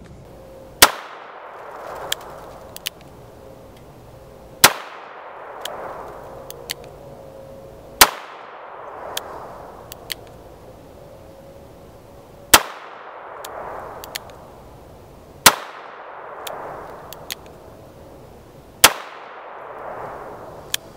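Six shots from a Smith & Wesson Model 64 .38 Special revolver, fired slowly one at a time, three to four seconds apart, each with a short echo dying away after it. A few faint clicks fall between the shots.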